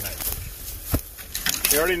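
Scattered rustling and light clicks of someone moving in dry grass in a bee suit, with one sharper click about a second in; a man's voice starts near the end.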